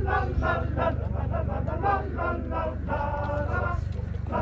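Men's choir singing a traditional song a cappella, several voices sustaining notes together, over a steady low rumble.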